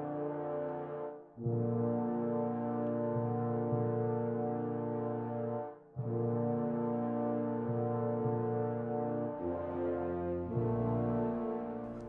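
Background music of long held chords, cutting out briefly about a second in and again about six seconds in, with the chord changing twice near the end.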